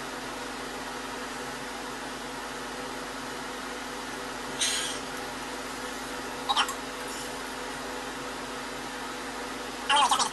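A steady low hum and hiss with no words over it. About halfway through comes a short, breathy rush of noise, and a couple of light clicks follow a couple of seconds later.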